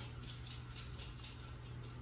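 Quiet room tone: a steady low hum under faint background noise.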